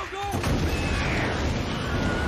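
Action-film soundtrack: a man's shout, then from about half a second in a loud, sustained rush and rumble of a flamethrower blast. A brief scream rises and falls inside the noise around a second in, the Wilhelm scream stock sound effect.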